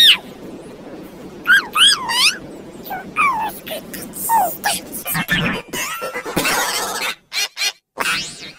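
Heavily pitch-shifted, effect-distorted voices from the 'cheese touch' movie scene ("Stop! Good God, man! You almost got the cheese touch"), warbling up and down in pitch. Near the end they break into short choppy bits with silent gaps.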